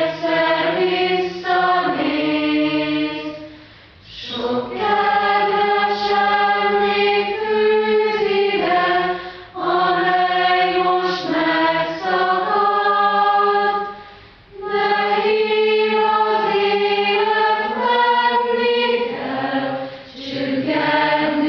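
Choir singing slowly in long held notes. The phrases break off briefly about four, nine and fourteen seconds in.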